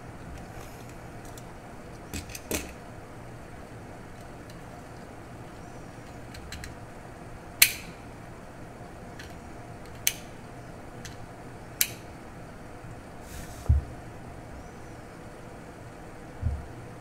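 Steady low room hum, broken by about five sharp clicks a few seconds apart and a dull thump near the end.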